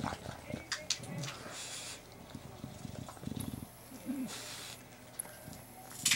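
Bulldog breathing noisily through its nose and giving short low grunts while chewing a plush toy.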